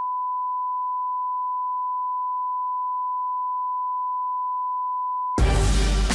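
Steady single-pitch test tone of about 1 kHz, the reference tone that goes with colour bars, held unchanged for about five seconds. It cuts off near the end as loud music starts.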